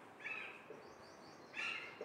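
Dry-erase marker squeaking faintly on a whiteboard while writing: a few short, high squeaks, one of them a quick run of tiny rising chirps about a second in.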